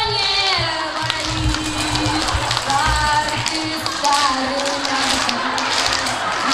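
A woman singing a song to her own acoustic guitar at a microphone, the voice gliding between held notes over the guitar's accompaniment.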